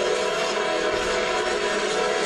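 Sci-fi action film soundtrack: a music score mixed with the steady engine rumble of spacecraft sound effects. The rumble swells a little past the middle.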